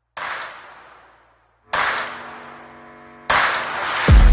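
Three sudden hits of edited impact sound effects, about one and a half seconds apart, each fading away. The second and third carry a ringing chord.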